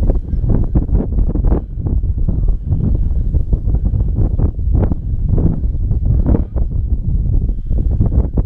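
Wind buffeting the microphone: a loud, gusty low rumble that rises and falls in quick surges.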